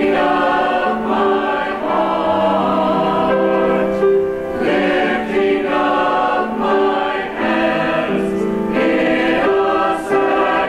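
Church choir of mixed men's and women's voices singing in parts, holding sustained notes with brief breaks between phrases.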